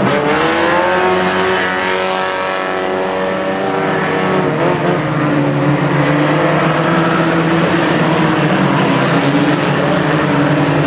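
Several small-engined micro banger race cars running and revving together on the track. Their engine note climbs in pitch over the first couple of seconds, then holds steady.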